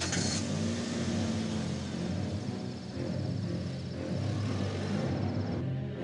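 Car engine and road noise of a car being driven at night, with a tense film score underneath.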